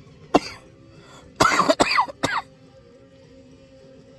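A man coughs once, then about a second later gives three more harsh coughs in a quick run.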